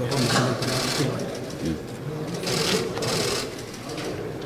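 Camera shutters firing in rapid bursts, four short runs of fast clicking, over a low murmur of voices.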